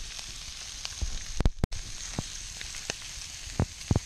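Meat sizzling in butter in a frying pan over a campfire, as a steady hiss with scattered sharp pops and crackles. One louder crack comes about a second and a half in.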